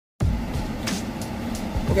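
Steady low rumble inside a car cabin, with a few faint light knocks partway through.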